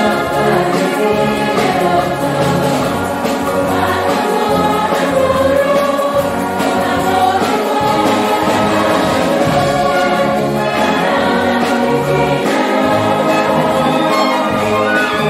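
Mixed choir singing a festival song in parts, accompanied by a massed brass band, at a steady full level.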